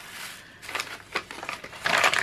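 Brown kraft packing paper crinkling and rustling as hands unfold it from around a package, in a run of irregular crackles that are loudest near the end.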